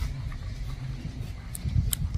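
Low rumble of wind on a phone microphone, with a few light handling clicks in the second half as the phone is moved.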